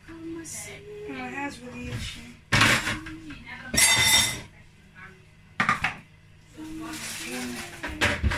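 Dishes and cutlery clattering in a stainless steel kitchen sink as they are handled for washing, a few separate clanks with a brief ring, the loudest about four seconds in.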